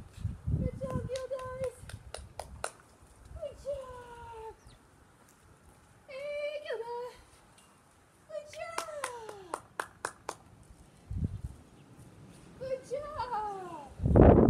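A series of about five wordless pitched vocal calls, some held level and most sliding down in pitch, with sharp clicks scattered between them.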